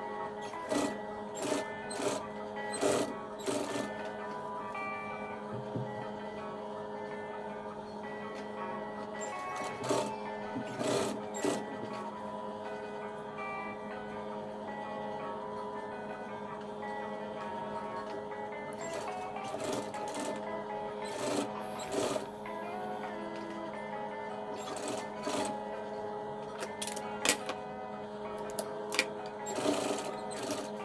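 Background music with steady held tones, over which an industrial sewing machine stitches in several short spurts.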